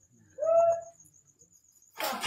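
A brief held high-pitched tone with overtones, lasting about half a second, about half a second in, over a faint, rapidly pulsing high-pitched chirping.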